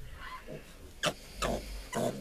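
A piglet gives a few short grunts while it is held and injected in the thigh with iron.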